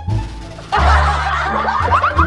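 Snickering, chuckling laughter coming in under a second in, over background music with a steady low bass line.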